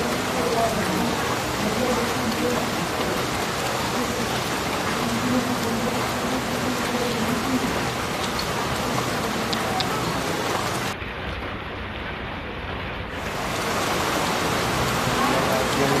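Heavy rain falling steadily, with faint voices underneath. Past the middle, the rain briefly sounds muffled for about two seconds.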